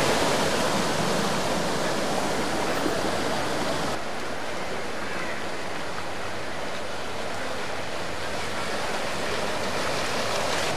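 Floodwater splashing and rushing as an SUV drives through it, a steady wash of spray from its tyres. About four seconds in, the sound drops to a quieter, even rush of water.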